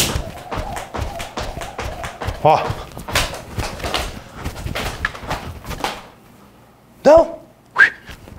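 Jump rope skipping on a rubber gym floor: a fast, even run of light slaps from the rope and the feet landing, stopping about six seconds in.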